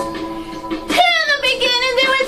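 A guitar-accompanied song; about a second in, a woman's singing voice comes in on one long note that slides down in pitch over the music.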